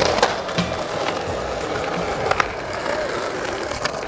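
Skateboard rolling on concrete, with sharp clacks of the board hitting the ground: one just after the start, a quick pair a little over two seconds in, and another near the end.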